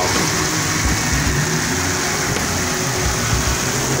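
Heavy rain falling with a steady hiss, mixed with car traffic on the wet street: engines running and tyres on the water, with a pickup passing close at the start.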